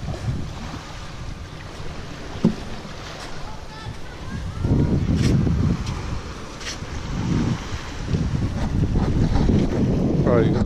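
Wind gusting across the camera microphone, with a low rumble that swells twice, over small waves washing onto the beach. A few sharp knocks stand out, the loudest a couple of seconds in.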